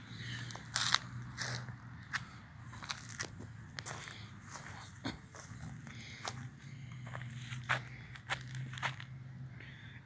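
Footsteps crunching and crackling on dry ground with fallen leaves, irregular steps about every half second to a second, over a faint, steady low hum.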